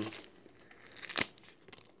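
Plastic bait packaging crinkling faintly as it is handled, with one sharp click just after a second in.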